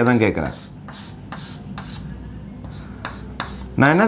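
Chalk scratching on a blackboard in a run of about ten short, quick strokes as a region is hatched with diagonal lines.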